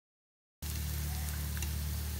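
Dead silence, then about half a second in, cornmeal flatbread patties sizzling steadily in hot frying oil in a pan, with a steady low hum underneath.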